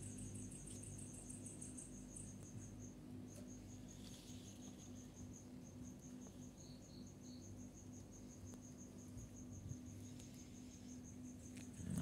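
Crickets chirping at night, a faint, steady train of high, evenly spaced chirps at about five a second, with a second higher series that stops about two seconds in. A faint steady low hum sits underneath.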